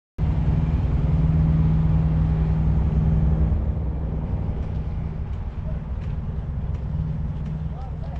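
Diesel semi-truck engine idling close by, a steady low rumble that eases off somewhat after about three and a half seconds. Faint clicks and a brief voice-like glide near the end.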